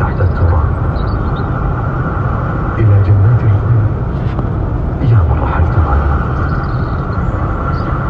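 Steady road and engine noise inside a car cruising at highway speed, with a low male voice heard over it.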